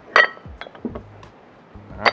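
Metal dumbbell weight plates clinking against each other and the steel bar as they are fitted on: one sharp, ringing clink about a fifth of a second in, then a few lighter clicks.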